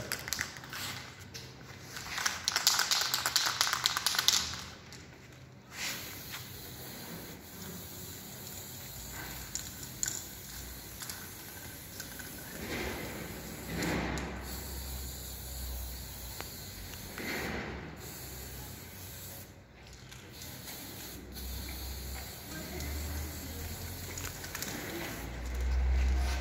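Aerosol spray paint can hissing in several bursts as paint is sprayed onto a bicycle frame. The longest and loudest burst comes a couple of seconds in, and shorter bursts follow later.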